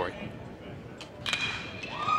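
Metal baseball bat striking a pitched ball with a sharp ping a little over a second in, its ring dying away within about a second, over quiet ballpark background.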